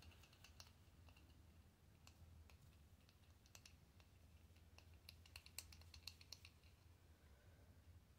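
Near silence: faint scattered ticks from a paintbrush dabbing paint onto a concrete statue, a little busier about five seconds in, over a low steady hum.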